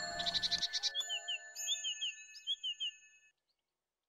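Soundtrack music's held notes with a run of short, high bird chirps over them, all cutting off about three seconds in.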